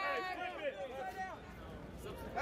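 Men's raised voices in a street crowd, loudest in the first second, then a lower murmur of voices.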